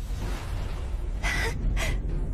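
Two short, breathy gasps from animated characters, about half a second apart near the end, over a steady low rumble of the glowing energy effect.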